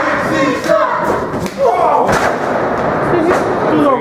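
A single loud thud about two seconds in: a wrestler's body hitting the wrestling ring mat after a rolling elbow strike, with voices shouting around it.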